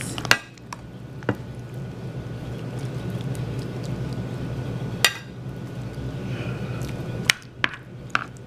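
A serving utensil scooping baked creamy fettuccine alfredo out of a baking dish, clinking and scraping against the dish a few times, with sharp clinks near the start, about five seconds in and again near the end.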